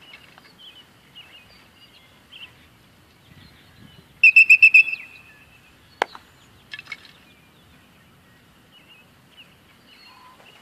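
A dog-training whistle blown close by, in a rapid shrill trill of about six pips a little after four seconds in. A sharp click follows, then a second short, fainter burst of pips. Faint birdsong chirps run behind.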